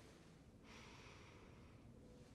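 A woman's single faint breath, about a second long, through the knitted wool collar of her sweater held over her nose and mouth.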